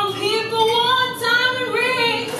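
A woman singing a cappella, with no accompaniment, holding long notes and sliding between pitches.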